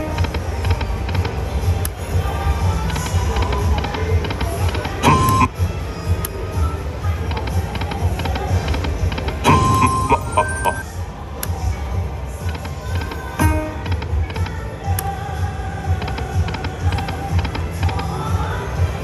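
Dragon Link "Happy & Prosperous" video slot machine playing its reel-spin music and sound effects through repeated spins, with short chime tones about five seconds in and again near the middle, over a steady low hum.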